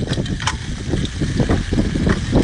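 Low rumble of wind buffeting the microphone, with a few light knocks about half a second in.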